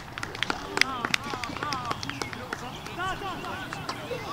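Soccer-field sound: distant calls from players and onlookers rise and fall a few times, over a steady scatter of sharp clicks and taps.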